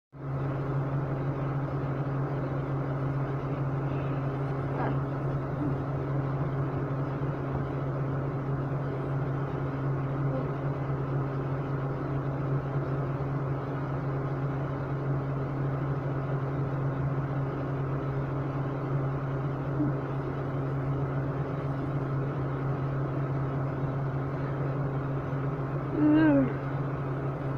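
Window air conditioner running with a steady low hum.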